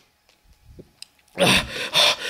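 Near silence for over a second, broken by a faint low thud and a single sharp click. About a second and a half in comes a man's loud, breathy gasp.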